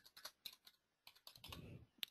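Faint computer keyboard keystrokes: a quick run of key taps as a string of digits is typed in.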